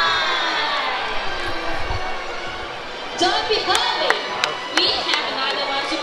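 Show music winds down in the first second. About three seconds in come voices and cheering from the crowd, with a few sharp claps or clicks.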